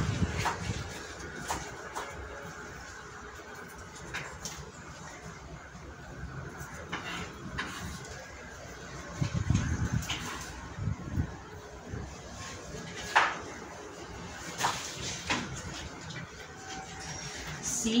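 Scattered rustles, soft knocks and taps of hands working potting soil and brushing the large leaves of a Monstera as it is set upright in its pot, with a sharper click about two-thirds of the way in.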